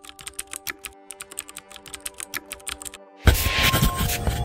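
Computer-keyboard typing sound effect: a quick run of key clicks over soft held background tones. Just after three seconds it gives way to a sudden louder swell of music.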